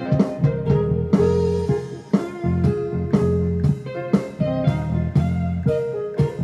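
Funky full-band groove played on a synthesizer keyboard: a steady bass line under guitar-like chords and a drum beat with regular, evenly spaced hits.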